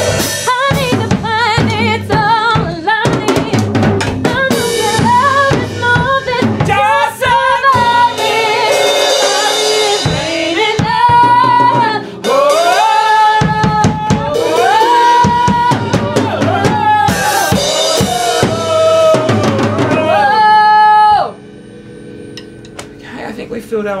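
A woman singing long, wavering notes with a strong vibrato over a drum kit played with sticks. The music stops abruptly about 21 seconds in.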